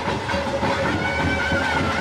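Traditional ritual procession music: a reed wind instrument holds a sustained, wavering melody over a steady drone, with a dense low rumble of percussion and crowd underneath.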